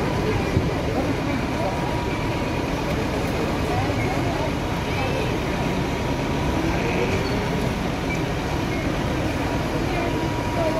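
Scania fire engine's diesel engine running its water pump to feed the hoses: a steady rumble with a thin, steady high whine on top.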